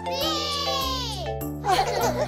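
Children's song music with a high child's voice holding one long note that slides down, then a short burst of children's voices near the end.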